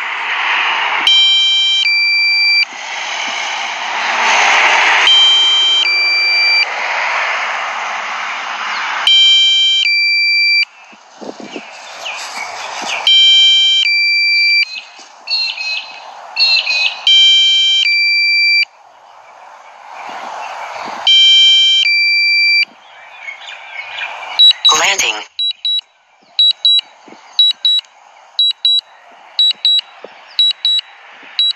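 Low-battery warning from a DJI Mavic Pro's flight controls: a stepped chime of several high tones repeating every two to four seconds over a rushing background noise. Near the end it changes to short, rapid high beeps about twice a second, the critical-battery alarm as the drone begins auto-landing.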